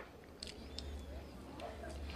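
Quiet room with a low steady hum and a few soft clicks of a fork on a hospital meal tray.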